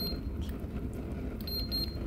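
Handheld infrared thermometer beeping as its trigger is held to take a reading: a short high beep at the start and another about a second and a half in, over a low steady rumble.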